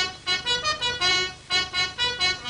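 Film score: a quick fanfare-like phrase of short, detached notes on a horn-like wind instrument, the pitch moving from note to note, with one longer note about a second in.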